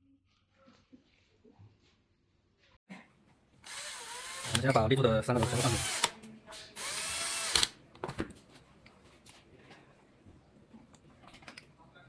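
Power drill-driver tightening screws on an electric unicycle's shock-absorber mounting: two runs of the motor, about two seconds and then about one second, its pitch wavering as the screws draw up, with small clicks of handling around them.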